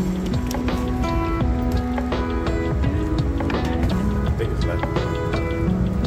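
Background music: a melody of held notes that step from pitch to pitch.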